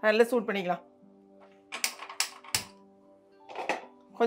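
Three sharp clicks about 0.4 s apart near the middle: a gas stove's burner knob being turned and its igniter sparking to light the burner under a saucepan.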